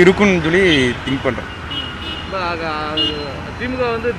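A man speaking, with road traffic noise behind his voice.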